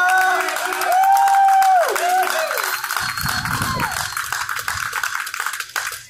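Scattered clapping with cheering shouts. One long cheer is heard about a second in, and the clapping thins toward the end.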